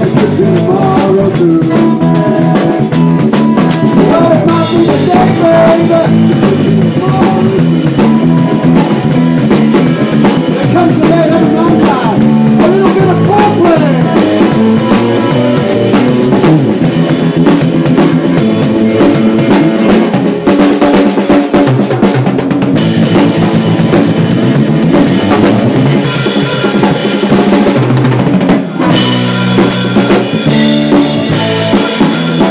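Live blues trio playing an instrumental passage: drum kit loudest and close up, with electric guitar and bass guitar under it.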